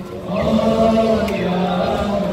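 Male voice chanting a Muharram lament (noha) in long held notes. It breaks off briefly and resumes about half a second in.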